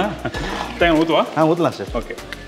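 Men's voices talking, with no other sound standing out.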